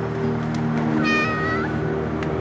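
A cat meows once, a short meow about a second in that bends slightly up at the end, over soft sustained background music.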